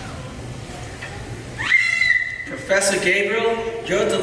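A child's high-pitched vocal squeak that slides upward and holds for about a second, starting a little past halfway, followed by more high-pitched voice sounds through the stage microphone.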